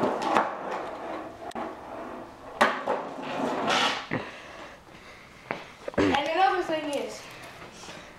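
Skateboard on concrete: wheels rolling, with several sharp clacks as the board knocks against the ground.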